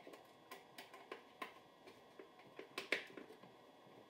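Scattered light clicks and taps at irregular intervals, the loudest just before three seconds in, from hands working on the hardware of a rotating lazy susan corner-cabinet shelf.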